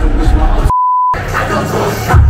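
Live hip-hop performance with heavy bass and vocals, interrupted about two-thirds of a second in by a single pure, steady beep lasting about half a second that replaces all the other sound: a censor bleep over a word.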